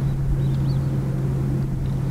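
Steady low engine hum with a rumble beneath it, holding one pitch.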